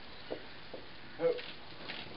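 Quiet room tone with a couple of faint small sounds, then one short vocal sound from someone in the room a little over a second in.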